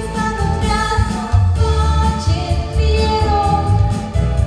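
A young girl singing into a microphone, holding long notes, over accompanying music with a strong, steady bass.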